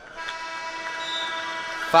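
An arena's match-ending horn sounds one steady, slightly buzzy tone for under two seconds as the clock runs out on the bout.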